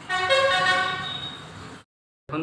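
A single long, steady horn-like tone with many overtones, fading slowly, then cut off abruptly shortly before the end.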